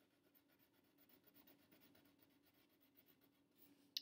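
Near silence, with faint scratching of a wax crayon colouring a box on a paper chart.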